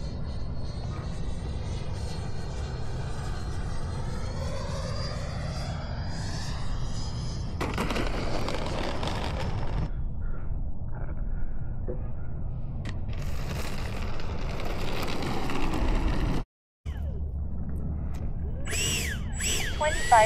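Electric ducted-fan model jet passing, its whine sweeping up and down in pitch over the first several seconds, over a steady rumble of wind on the microphone.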